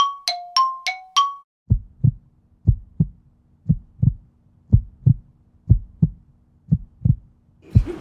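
A run of chime notes alternating between two pitches ends about a second and a half in. A heartbeat sound effect follows: paired lub-dub thumps about once a second over a faint steady hum.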